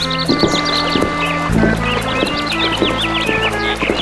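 Cartoon background music with steady held notes, overlaid with many quick high chirps that come thickest in the second half.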